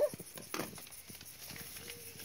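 A few soft footsteps on wooden deck boards, quiet and irregular.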